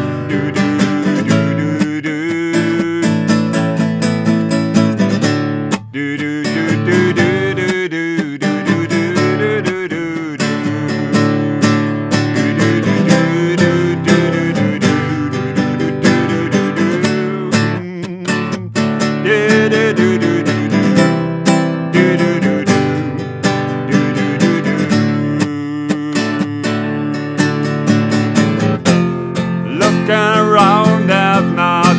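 Nylon-string classical guitar strummed in a steady rhythm, playing a chord accompaniment through an instrumental passage.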